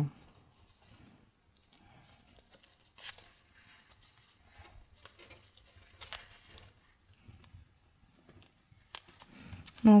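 Faint rustling and crinkling of stiff starched lace and fabric handled in the hands, with small ticks of a needle and thread being worked through it in hand sewing. A few sharper ticks stand out, about three seconds in and near the end.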